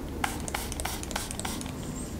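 Hand pump spray bottle spritzing leave-in conditioning spray onto a dog's coat: a quick run of about five short sprays in a second and a half.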